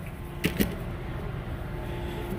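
Two quick light clicks about half a second in, over a low steady background hum.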